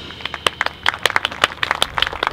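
Scattered applause from an audience: many uneven, separate claps rather than a dense roar.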